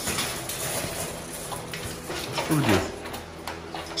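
Clattering and crackling from pit bulls moving about in wire crates and kennels, with many small clicks. A short falling vocal sound comes about two and a half seconds in.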